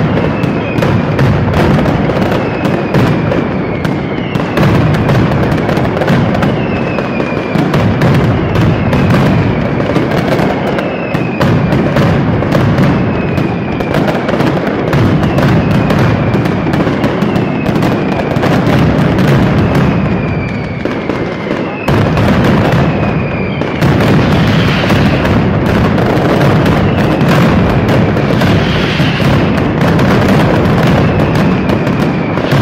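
Mascletà firecracker barrage: a continuous rapid run of bangs so dense that the reports run together. Short falling whistles come every second or two, and the barrage turns heavier and denser a little over twenty seconds in.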